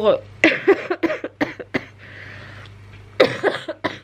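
A woman coughing several times in short fits, the loudest cough about three seconds in.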